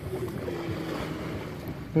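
Distant motorboat engine droning steadily, one low hum held under a low rumble of wind and water.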